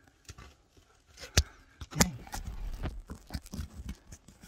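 Caver's clothing and gear rustling and scraping against rock as he moves, with two sharp knocks about half a second apart in the middle.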